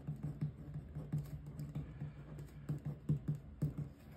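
Marker pen writing on paper: a quick, irregular run of short strokes and taps as words are handwritten.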